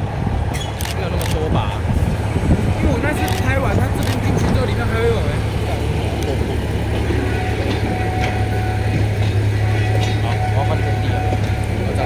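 Diesel shunting locomotive running steadily with a low, even engine hum as it hauls a train of passenger coaches out of the depot.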